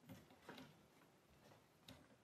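Near silence in a quiet courtroom, broken by a few faint knocks and clicks, about three, from people moving about as the judges leave the bench.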